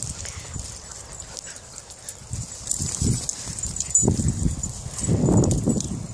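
Dogs on leads making low, noisy sounds close to the microphone, in a series of short bursts that are loudest about three, four and five seconds in.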